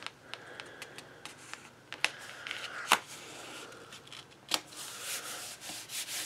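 Black cardstock being handled and slid about, with a few sharp taps, then hands rubbing flat across the paper near the end.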